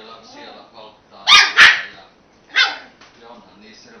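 A German Spitz (Kleinspitz) puppy barking at a drink can in play: three high-pitched barks, two in quick succession about a second in and a third about a second later.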